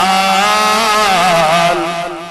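A man singing a naat without accompaniment, holding one long ornamented note that wavers in pitch and trails off near the end.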